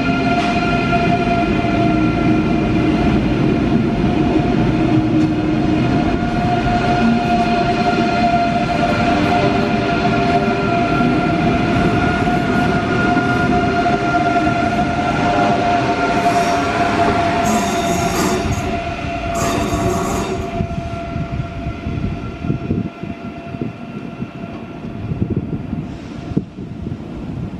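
Deutsche Bahn ICE electric high-speed train pulling out of the station past the platform: a steady whine from its traction motors over the rumble of wheels on rail. A few brief high hisses come about two-thirds of the way through, and then the sound fades as the last cars go by.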